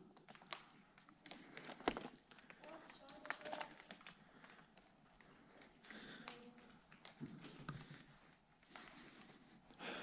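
Quiet, scattered footsteps tapping and crunching over a debris-strewn floor, with a sharper knock about two seconds in and faint voices in the background.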